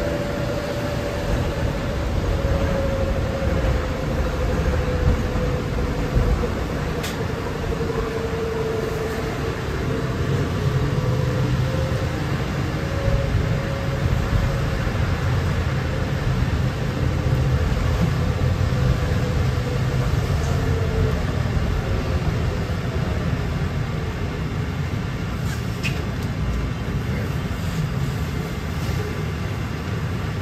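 Interior of a 2006 New Flyer electric trolleybus under way: a steady low rumble of the ride, with a thin motor whine that slowly falls in pitch over the first twenty seconds or so.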